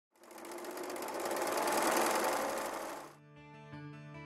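A sewing machine running fast in a rapid, even stitching rhythm for about three seconds, swelling and then fading out. Instrumental music begins as it stops.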